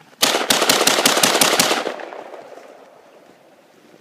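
Colt 6920 AR-15 carbine firing a rapid semi-automatic string of about ten 5.56 mm shots in a second and a half, the reports echoing away afterwards. The rifle cycles through the string despite slush frozen into its ejection port overnight.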